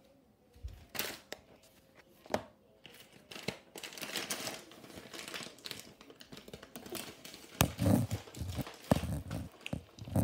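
Close handling noise: crinkling and rustling with a few sharp clicks, then several heavy thumps near the end.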